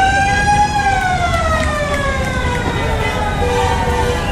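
A siren wailing: one long tone rises for about the first second, then slowly falls and levels off at a lower steady pitch near the end, over a low rumble.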